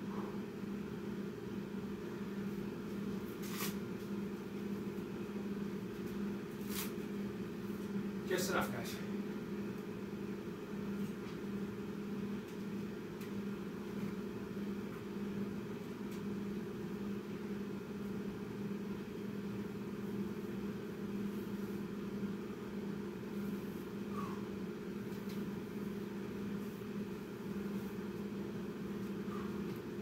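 A steady low mechanical hum, with a few faint clicks about three and a half, seven and eight and a half seconds in.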